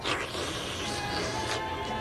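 A person's mouth imitating the suction of a carpet-cleaning machine: one long breathy hissing whoosh that eases off about a second and a half in.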